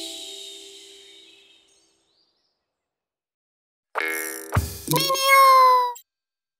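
The last note of a gentle children's lullaby fades out over about two seconds, followed by silence. About four seconds in, a short bright logo jingle plays, ending in a cartoon cat's meow that falls slightly in pitch.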